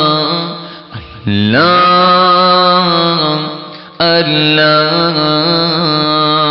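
A man chanting an Islamic devotional chant in long, drawn-out held notes. The voice drops away briefly about a second in, then slides up into a new sustained note, and starts a fresh phrase at about four seconds.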